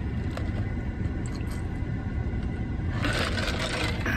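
A person taking a noisy slurping sip of an iced energy drink about three seconds in, over a low steady rumble.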